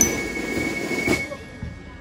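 Drum and fife corps playing a march: the fifes hold one high note over the snare drums until about a second in, then the band stops and only a fading echo remains before the playing starts again at the end.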